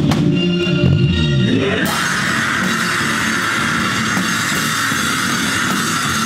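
Heavy rock band playing loud, with drum kit and distorted guitar; about two seconds in the sound turns brighter and denser.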